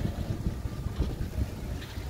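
Wind buffeting a phone microphone while cycling, a low uneven rumble, mixed with street traffic noise.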